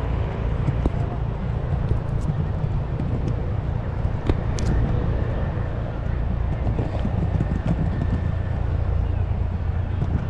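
Penny board's small plastic wheels rolling over the wooden boardwalk planks: a steady low rumble with scattered light clicks.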